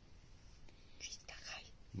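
A faint whisper, a couple of short breathy bursts about a second in, after a quiet first second.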